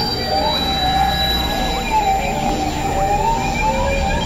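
Layered electronic drones: several wavering tones gliding slowly up and down in pitch, like sirens, over a steady high whine.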